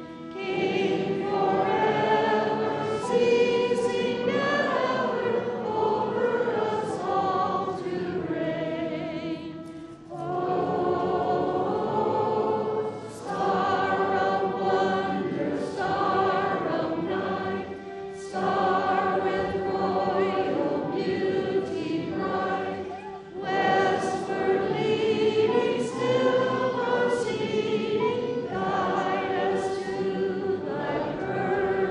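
Congregation singing a hymn together, in sustained phrases with short breaks between them.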